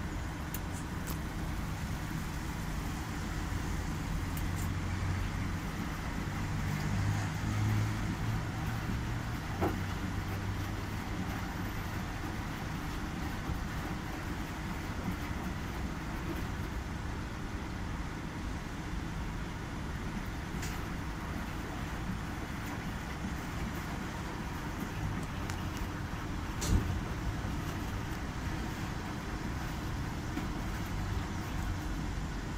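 Commercial front-loading washing machine running its wash cycle: a steady low motor hum as the drum turns a wet load, with a couple of short knocks, the sharpest near the end.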